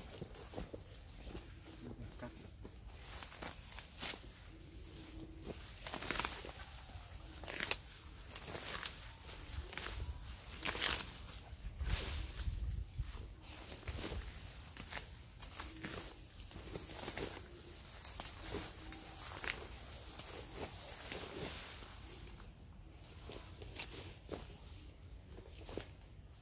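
Bougainvillea branches and leaves rustling and snapping as a person pushes into the bush and cuts at it: irregular sharp snaps and rustles, some louder than others.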